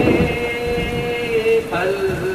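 Intro sound effect for an animated logo: a rumbling, rain-like noise under a long held vocal note, with a new set of held notes coming in near the end.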